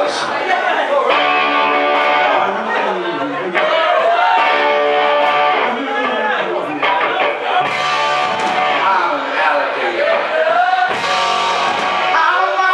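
Live rock band playing, electric guitar strumming chords under a male lead voice at the microphone.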